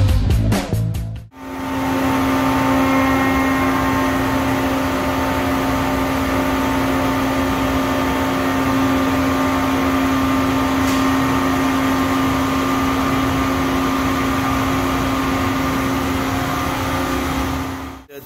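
A short music sting ends about a second in. Then a CNC milling machine runs steadily, with a constant tone from the spindle over a wash of noise, as a 3 mm ball-end mill finishes the radius at the bottom of the exhaust port in an aluminium Mazda rotary engine housing.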